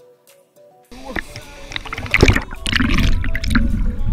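Water sloshing and splashing against a GoPro in its waterproof housing, held at the waterline by a swimmer, muffled by the housing. It starts suddenly about a second in and is loudest around the middle. Quiet background music plays through it, and the music is all there is before the water starts.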